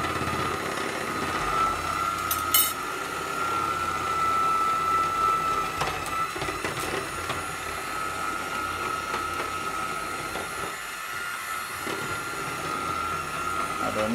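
A hand-held mesh sieve being shaken and tapped as flour and baking soda are sifted into a plastic bowl, with a few light clicks. A steady high-pitched hum runs underneath.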